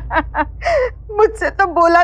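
A woman's voice in short, broken, wailing cries, with a gasping breath less than a second in: a theatrical show of crying.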